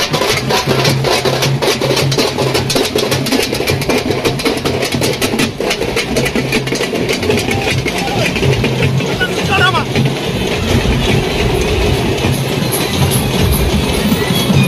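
Procession drums beaten rapidly with sticks, the strikes dense for the first half and thinning later, over the hubbub of a crowd's voices. A low hum comes and goes underneath.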